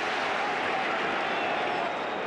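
Steady noise of a large football stadium crowd during open play.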